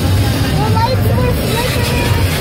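Open-air tour tram running, a steady low rumble, with faint passenger voices over it.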